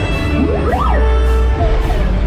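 Theme-park dark-ride soundtrack: orchestral music over space-battle sound effects, with a constant deep rumble. A little under a second in, a tone sweeps sharply up and falls back, then holds steady.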